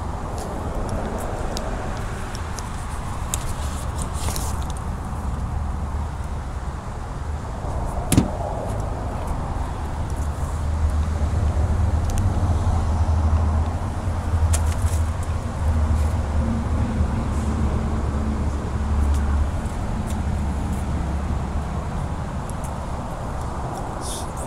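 A motor vehicle engine running with a steady low rumble that swells through the middle, with one sharp click about eight seconds in.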